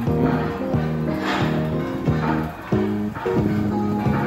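Background music: a melody of held notes changing about every half second, each change marked by a struck attack.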